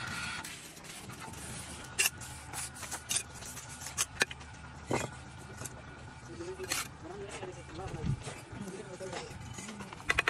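A bricklayer's steel trowel scraping cement mortar and tapping on bricks, with several sharp clicks about two to five seconds in.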